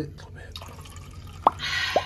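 Sparkling wine poured from a bottle into a plastic flute: two quick glugs from the bottle neck near the end, with foam fizzing in the glass between them.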